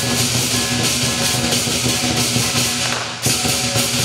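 Live southern lion dance percussion: a big lion drum beating under clashing cymbals and a ringing gong, loud and continuous. The crashing drops away briefly a little after three seconds, then comes back in.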